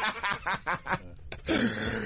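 Men laughing in short, quick chuckling bursts, with a brief pause before more laughter near the end.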